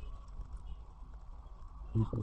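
Quiet pause with a steady low hum of background noise and no distinct event.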